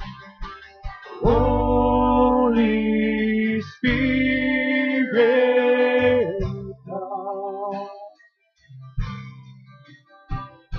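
Worship music played on acoustic guitar, with two long held sung notes about a second in and in the middle, then softer guitar playing near the end.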